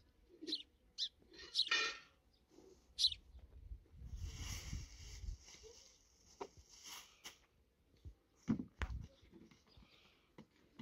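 A few short, high-pitched animal calls in the first three seconds, one of them longer and more drawn out. They are followed by a few seconds of rustling and two sharp knocks near the end.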